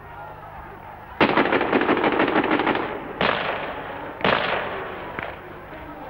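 Three sudden, loud crackling bursts, the first a little over a second in and the others about two seconds and one second after it, each fading away over about a second. A faint low hum sits under them.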